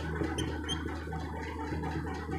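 Marker pen writing on a whiteboard: a rough scratching of the tip across the board, with two short squeaks in the first second.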